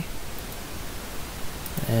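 Steady background hiss of the recording, with a man's voice starting near the end.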